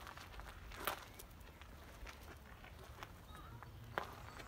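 Footsteps of a person walking on an outdoor path: a few soft, irregular steps, the loudest about a second in, over a low steady rumble.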